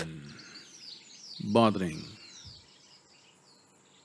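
Faint bird chirps, short falling calls repeated over the first few seconds, with a brief bit of a man's voice about one and a half seconds in.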